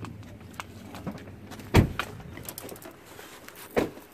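A pickup truck door shut with a single heavy thump about two seconds in, followed by a second, quieter knock near the end.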